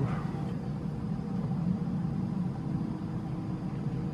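Steady low rumble of outdoor background noise with a faint steady hum, no distinct events.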